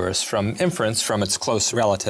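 A man speaking continuously.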